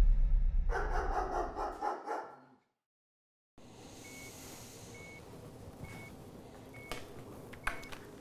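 A loud, deep rumble fades out over the first two seconds and gives way to a second of dead silence. Then a bedside heart monitor beeps steadily, five short high beeps a little under a second apart, over faint room hum.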